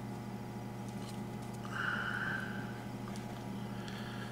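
Low steady electrical hum, with a faint soft hiss lasting under a second about two seconds in.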